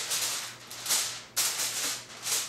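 Aluminium foil crinkling as a sheet is pulled from the roll and pressed and crumpled over a metal baking pan, in several loud rustling bursts.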